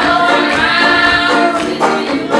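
Group of voices singing a vaudeville-style song with banjo accompaniment; the voices hold one long note through most of it, and the strummed rhythm comes back near the end.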